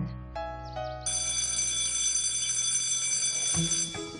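A few short music notes, then a steady electric school bell ringing for about three seconds over a low held music note.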